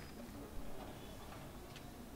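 Faint background with a couple of soft clicks, one about half a second in and a fainter one near the end.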